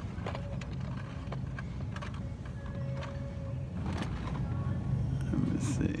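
Blister-packed Hot Wheels cars on metal peg hooks being handled, the plastic packs clicking and rattling now and then over a steady low hum of store background noise.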